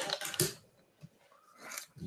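A pen scratching on paper in a few short strokes in the first half second as a note is written down, with a fainter rustle near the end.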